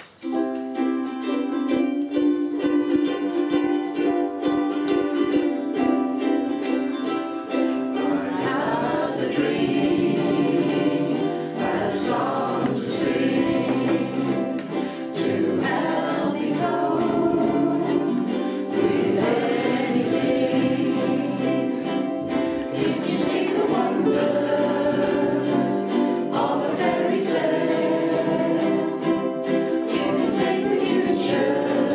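A group of ukuleles strumming chords together in steady time, joined about eight seconds in by a group of voices singing in unison, the women leading the vocal.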